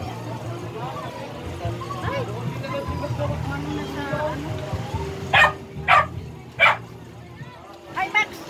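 A dog barks three times in quick succession, about five seconds in, over background chatter.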